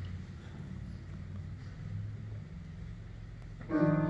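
A low, steady room hum, then near the end a piano begins the hymn's accompaniment with a sudden, loud sustained chord.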